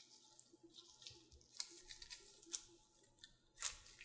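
Gloved hands handling oiled, coiled paratha dough on a silicone mat: plastic gloves rustling and short, sticky rubbing strokes as the coil is tucked and pressed flat, the loudest stroke near the end.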